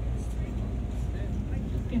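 Steady low rumble of a passenger ferry under way, its engine running evenly while cruising.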